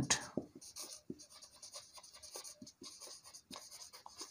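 Marker pen writing on a whiteboard: quiet, irregular short strokes as words are written.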